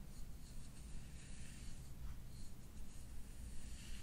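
Soft, irregular scratchy rubbing of a small hand-held scalp tool and fingers working through wet hair against the scalp, over a low steady room hum.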